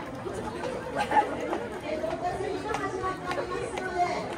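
Indistinct chatter of many people talking at once, no single voice standing out.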